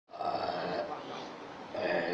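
Two short vocal sounds from a person: one lasting just under a second near the start, a second shorter one near the end.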